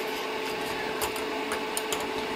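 Steady whir of the resin printer's small cooling fan with a thin steady tone, and a couple of faint clicks from hands tightening the build-platform screws.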